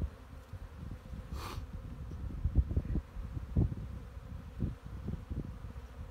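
Honeybees buzzing around an open hive, with short low thumps and knocks as a brood frame is worked loose with a hive tool and lifted out, and one brief scrape about one and a half seconds in.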